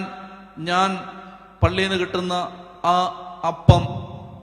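A man's voice chanting a prayer into a handheld microphone in about five short phrases held on a nearly level pitch, with a couple of sharp microphone pops.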